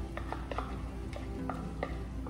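Background music with steady pitched notes, over a handful of light, irregular knocks and scrapes as a small tub of tomato paste is tapped and scraped out into a metal stockpot.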